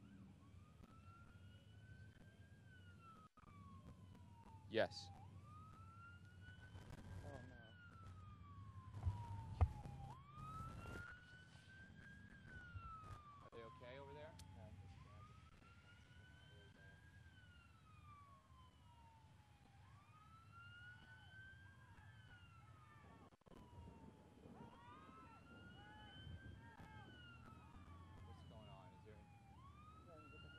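Faint emergency-vehicle siren on a slow wail, rising and falling about once every five seconds. A sharp click about five seconds in and a few knocks around ten seconds are louder than the siren.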